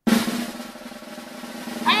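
Snare drum roll sound effect that starts suddenly, eases off a little, then builds louder towards the end.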